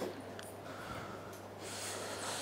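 A pause with a person breathing near the microphone, the breath growing slightly stronger near the end, over a steady low electrical hum.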